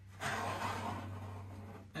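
A person breathing out at length, one long exhale that fades gradually.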